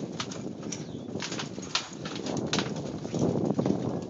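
Trampoline springs and mat creaking and squeaking in short, irregular clicks as wrestlers shift and stand on it, over a steady rumble of wind on the microphone.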